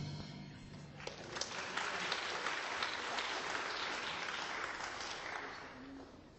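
An audience applauding as the last chord of the band's song rings out; the clapping swells about a second in, holds, then fades away near the end.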